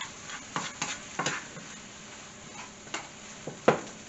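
Vegetables sautéing in butter in a skillet, a faint steady sizzle, with a utensil scraping and knocking against the pan about five times as they are stirred.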